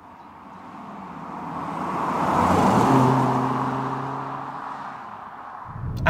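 A car driving past: tyre and engine noise swells to a peak about three seconds in, then fades as it goes away, leaving a low, steady engine hum.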